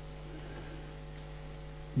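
Steady low electrical mains hum with a faint hiss underneath, the background noise of the recording.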